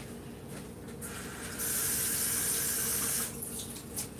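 Kitchen tap running for about two seconds as a bunch of parsley is rinsed under it. The tap comes on about a second in and is shut off a little after three seconds.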